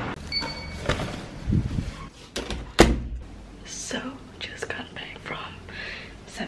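A door being handled, shutting with a loud thunk about three seconds in, among scattered clicks; a short electronic beep sounds near the start.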